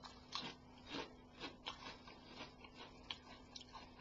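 A person biting into and chewing a crisp prawn cracker: a run of faint, irregular crunches close to the microphone.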